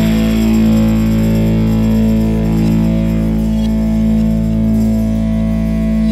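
Stoner doom metal: distorted electric guitar and bass holding one long, droning chord that rings out unchanged, as a cymbal wash fades behind it.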